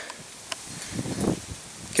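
Wind rustling past the microphone outdoors, with one faint click about half a second in and a soft swell of noise a little after a second.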